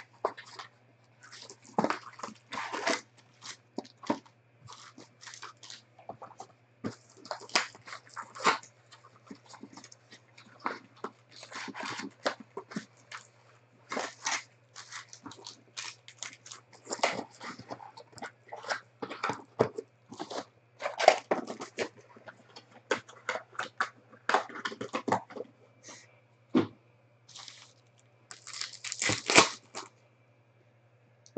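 Hands tearing the cellophane wrap off a trading-card hobby box, opening the cardboard box and handling the plastic-wrapped card packs. The sound is irregular crinkling, rustling and tearing with short louder bursts, over a faint steady low hum.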